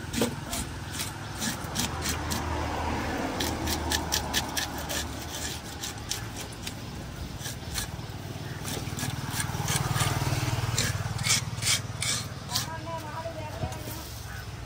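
Knife blade scraping scales off a large whole fish on a wooden block, in quick repeated rasping strokes that thin out near the end. A low steady rumble runs underneath.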